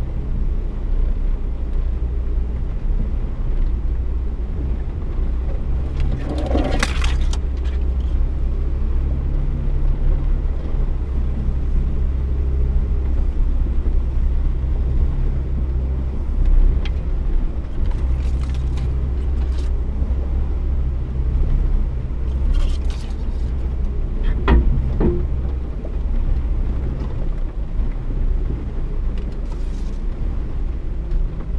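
A vehicle's engine and drivetrain running steadily at low speed in four-wheel travel over a snowy trail, heard from inside the cab as a loud, steady low drone. A few short knocks and scrapes stand out, about seven seconds in and again near the end.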